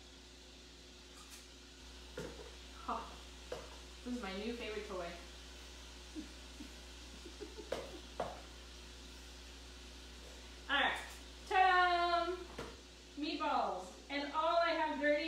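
Light clicks and knocks of kitchen utensils and dishes over a faint steady hum, with short bits of a woman's voice, louder near the end.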